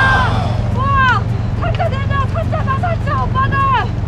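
Short, high-pitched excited cries and exclamations from the people landing a large rock bream, over a steady low hum.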